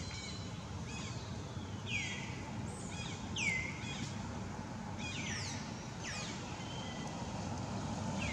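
Young long-tailed macaques squealing during rough play: several high calls that slide sharply downward in pitch, the loudest about two and three and a half seconds in, over a steady low background noise.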